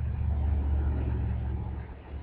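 A low rumble that builds, holds for over a second, and eases off near the end.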